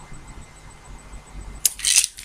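Quiet room tone, then near the end a short rattle of tablets shaken in a plastic pill bottle as it is moved.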